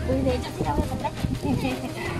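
Indistinct voices of people talking over one another in the background, with a low steady hum under them for the first half-second.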